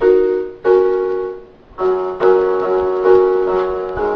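Portable electronic keyboard with a piano voice playing the bridge chords of a song. Two chords are struck and ring out, then after a short gap a run of repeated chords follows, about two a second.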